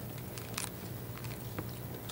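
Meeting-room quiet: a steady low hum with a few faint clicks and rustles from small movements at the table.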